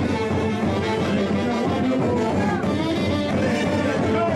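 A live dance band playing a steady, loud tune, with saxophones and other brass, violin and guitar together.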